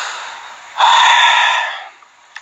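A man's breathy exhales close to a phone's microphone. A softer breath at the start, then a louder, longer sigh-like blow of about a second, with no voice in it.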